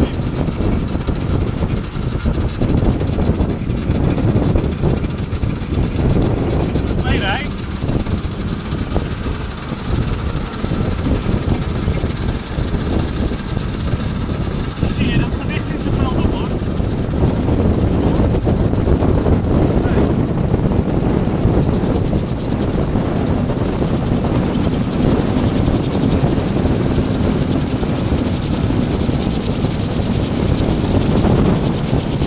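Strong wind buffeting the microphone, a loud, steady low rumble, while the wind-turbine-driven tricycle rolls along on asphalt. A faint high-pitched whine comes in about two-thirds of the way through.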